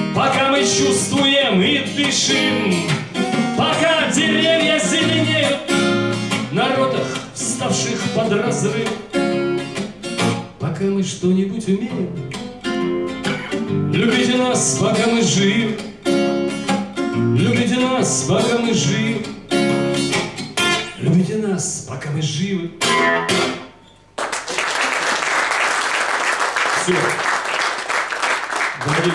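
A man sings a Russian song to his own acoustic guitar accompaniment. The song ends about four seconds before the end, and an audience breaks into steady applause.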